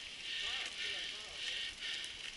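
Mountain bikes riding along a dirt forest trail, a steady rolling noise with faint voices in it.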